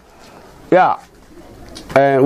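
A short pause in a man's speech, broken about three-quarters of a second in by one brief spoken syllable that falls in pitch.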